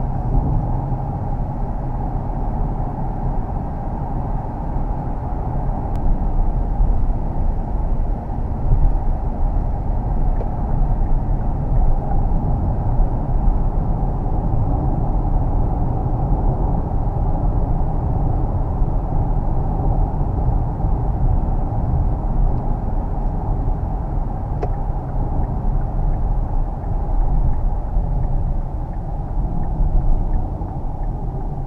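Interior cabin noise of a Kia Optima Plug-in Hybrid at motorway speed: a steady, low rumble of road and wind noise.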